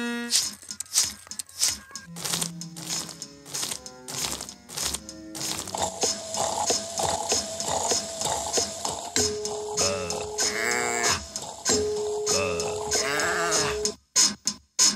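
Film soundtrack of rhythmic everyday noises cut to a beat: regular clicks, knocks and bedspring creaks keep time, with low pitched notes for the first five seconds. A steady held tone and warbling, wavering sounds come in about halfway through.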